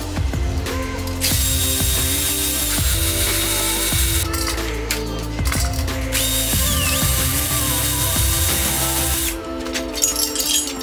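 A hand-held power tool running in long whirring bursts on an engine block, with two short breaks near the middle and a brief dip in motor pitch about seven seconds in. Background music plays throughout.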